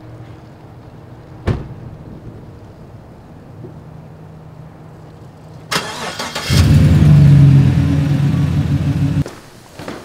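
A pickup truck door shuts about a second and a half in. A few seconds later the Chevrolet pickup's engine cranks, catches and runs loudly for about three seconds, then cuts off suddenly.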